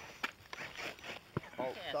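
Two short, sharp knocks about a second apart, then a man's brief exclamation of "Oh".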